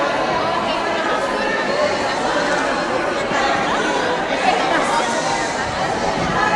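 A crowd of many people talking over one another in a large hall: a steady, indistinct chatter with no single voice standing out.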